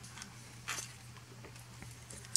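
Small plastic Transformers Generations Tailgate action figure being handled during transformation: faint rubbing and light clicks of plastic parts, with one sharper click a little under a second in, over a low steady hum.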